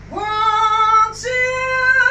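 A woman singing two long held notes, the second a little higher than the first, with a short break about a second in; no instrument stands out beneath the voice.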